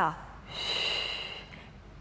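A woman's single audible breath, about a second long, a breathy hiss with a faint whistle in it. It is the paced breathing of a Pilates exercise.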